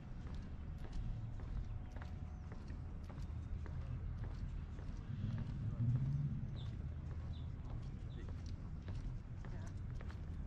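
Footsteps on wooden boardwalk planks, a hollow, regular walking clatter, over a steady low rumble of wind on the microphone. Low voices pass by about halfway through.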